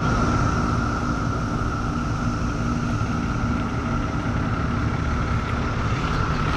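Pickup truck engine idling with a steady low rumble, under a steady high drone of cicadas.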